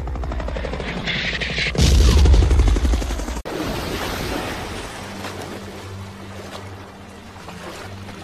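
War-film battlefield sound: the steady chop of helicopter rotors with a loud low rumble about two seconds in, cut off abruptly a little after three seconds. Low, slowly pulsing music notes follow.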